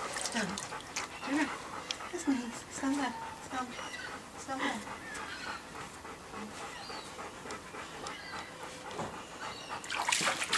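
Large dog panting while it stands in a shallow plastic paddling pool, with a few short low vocal sounds in the first half and small splashes as it shifts its paws in the water.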